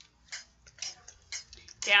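Metronome set at 60 ticking evenly, about two short clicks a second.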